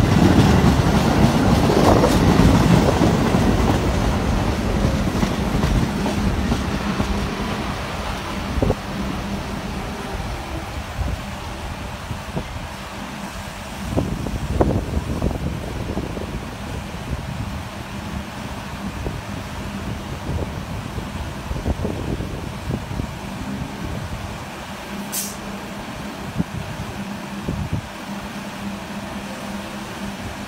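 MTA Staten Island Railway electric train rolling past, loudest in the first few seconds, then fading to a steady low hum with scattered knocks from the wheels and cars and one sharp click near the end.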